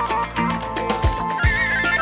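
Live folk dance music: a lead melody with quick, wavering ornaments over the beat of a large double-headed davul drum, with one deep drum strike about one and a half seconds in.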